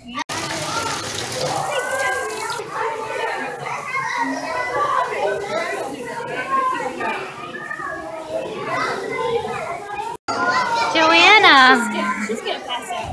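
A crowd of young children all talking and calling out at once, a steady babble of many voices. Near the end, after a sudden break, one small child's loud voice with its pitch sweeping up and down.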